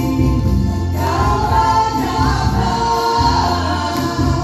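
Music with a group of voices singing together.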